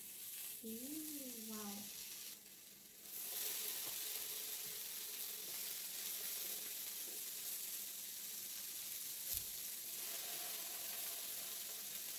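Raw pork belly slices sizzling on a hot tabletop grill plate as they are laid down one after another, a steady hiss that gets louder about three seconds in as more slices go on.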